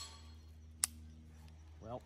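A single sharp click about a second in from a suppressed KelTec CP-33 .22 pistol that has stopped firing. It is a stoppage, which the shooter lays to the CP-33 and to .22 ammunition.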